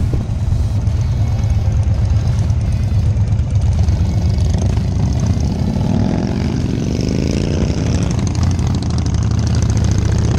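Motorcycle engine heard from the rider's seat, a steady low rumble at low speed, then climbing in pitch as the bike accelerates from about six seconds in.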